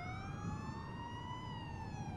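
Emergency-vehicle siren wailing, its pitch rising slowly, peaking about one and a half seconds in, then starting to fall.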